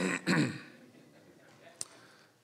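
A man clearing his throat into a microphone, one short loud rasp at the start, followed by quiet room tone with a single sharp click near the end.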